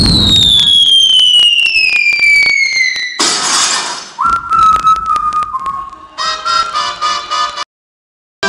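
Sound-effect mix in a dance routine's recorded soundtrack: a long falling whistle ends in a sudden noisy burst about three seconds in, then a held whistle tone with sharp clicks and a short burst of music that cuts off suddenly near the end.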